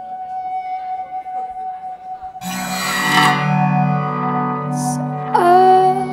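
Live guitar music: a single high note is held steadily, then a full guitar chord is struck about two and a half seconds in and left ringing. Near the end a woman's voice comes in with a wordless sung line over it.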